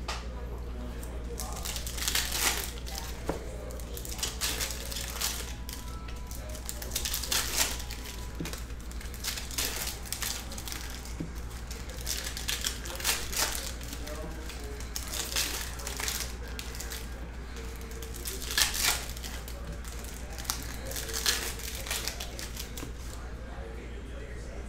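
2021 Panini Donruss Optic Football foil card packs being crinkled and torn open, with cards handled in between: short, irregular crinkling bursts every second or two over a steady low hum.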